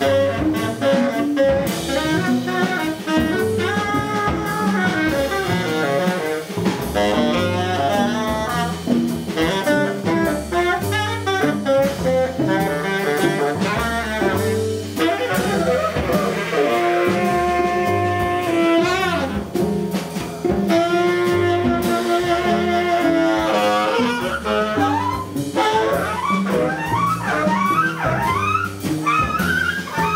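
Live jazz improvisation by a quartet: saxophone over cello, double bass and drum kit. The saxophone holds two long notes midway, then plays quick rising and falling runs near the end.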